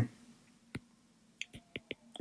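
Faint clicks of a stylus tapping on a tablet screen during handwriting: a single click, then a quick run of four or five close together near the end.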